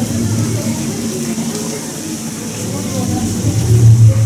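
Deep, low rumbling growl from the animatronic dragon's soundtrack, swelling louder near the end as the dragon lifts its head, with indistinct voices beneath it.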